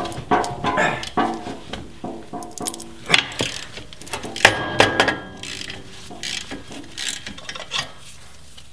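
A hand socket ratchet clicking in runs as the track bar's axle-end bolt is backed out of its bracket, with brief pitched tones among the clicks.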